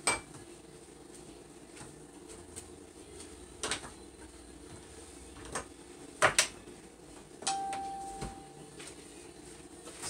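Dishes and utensils being handled at a kitchen sink: scattered clinks and knocks. About three-quarters of the way through, one knock leaves a piece ringing with a short, steady tone that fades.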